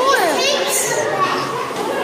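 Young children's voices chattering and calling out, high-pitched and overlapping.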